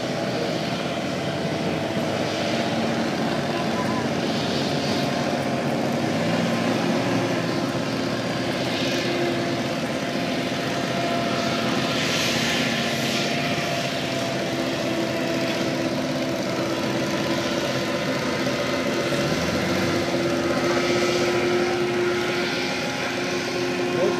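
Hovercraft running on the water: a steady propeller-and-engine drone from more than one craft at once, its pitch drifting slightly up and down as they move.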